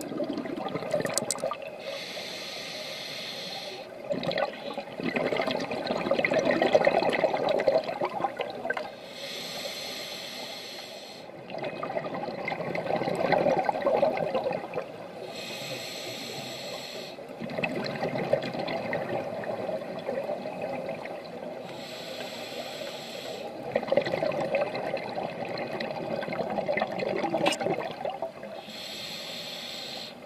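Scuba diver breathing through a regulator underwater: a short hiss on each inhalation, then several seconds of bubbling as the exhaled air vents. The cycle repeats about every six to seven seconds, five breaths in all.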